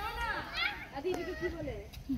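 Children's voices chattering and calling out in high, bright tones.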